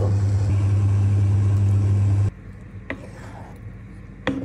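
Steady low hum with a hiss over it from a running kitchen appliance at the cooktop. It cuts off suddenly a little over two seconds in, leaving a much quieter background with a single light click about a second later.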